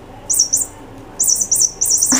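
Bird-like chirping: two quick high peeps, then a fast run of about six more near the end.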